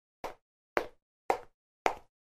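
Four short pops, evenly spaced about half a second apart like a beat, at the start of a song's intro.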